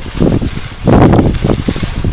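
Wind buffeting a handheld camera's microphone: a loud, rushing rumble that grows stronger about a second in.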